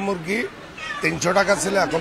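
Speech: a man talking in Bengali at conversational pitch, with a short pause about half a second in.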